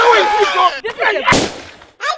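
Loud, high-pitched raised voices, then a single loud bang about a second and a half in.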